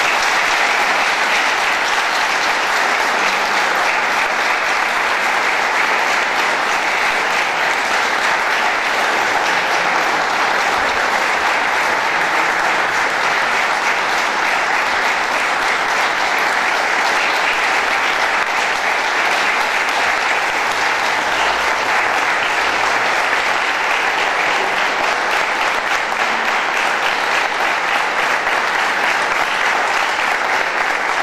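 A large audience applauding, a dense steady clapping that holds unbroken throughout.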